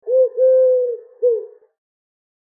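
A pigeon cooing three notes: a short coo, a long held coo, then a short one, stopping about a second and a half in.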